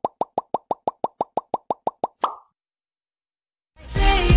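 Rapid, even series of short identical plopping ticks, about seven a second, from a TikTok randomizer filter's sound effect as it cycles through choices, ending with one slightly longer tone a little past two seconds in.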